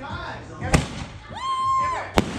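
An aerial firework going off with one sharp bang about a third of the way in, followed near the end by a short, steady, high-pitched whistle.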